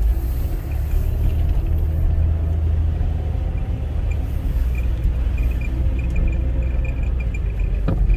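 Steady low rumble of a car driving slowly, heard from inside the cabin: engine and tyre noise.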